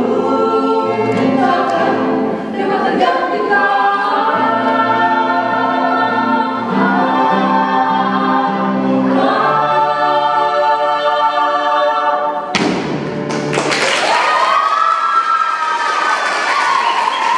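Mixed vocal group singing in close harmony and holding a long chord. About twelve seconds in, the singing gives way abruptly to cheering and applause.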